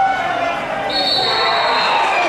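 Players and crowd shouting at a football match, with a referee's whistle blown about a second in and held for about a second.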